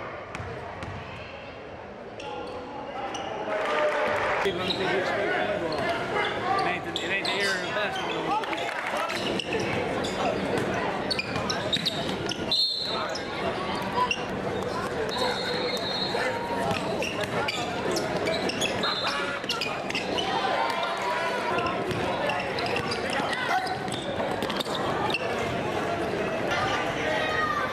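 Live game sound in a large gym: a basketball being dribbled and bouncing on the court, over spectators' voices and shouting. A few brief high-pitched squeaks cut through partway in.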